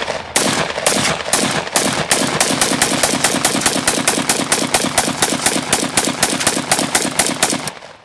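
AK-47 rifle firing 7.62×39mm rounds in a rapid string of shots, about five a second, which stops near the end.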